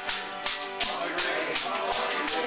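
Newfoundland traditional tune on button accordion and acoustic guitar, with an ugly stick (a pole fitted with jingles) struck in a steady beat of about three jingling thumps a second.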